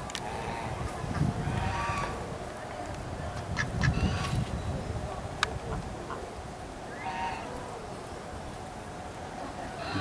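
Waterfowl in an aviary enclosure calling: a few short calls about a second and a half in and again about seven seconds in, with a low rumble in between.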